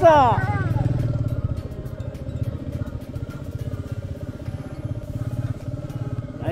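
Motorcycle engine running steadily under way on a rough dirt road, its low firing beat even throughout. A voice trails off in the first half second.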